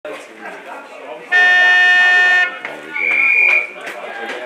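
Football ground siren sounding once for about a second, a loud steady buzzing horn tone, signalling the start of play. About a second later the umpire's whistle gives one short, high blast. Voices chatter throughout.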